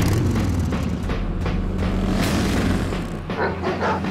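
Cruiser motorcycle engines running loud and low, with trailer music mixed in; the sound comes in suddenly with a heavy hit.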